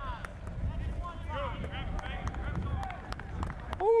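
Outdoor football practice background: faint distant voices calling out over a low steady rumble, with a few faint sharp knocks. A man's loud 'ooh' comes right at the end.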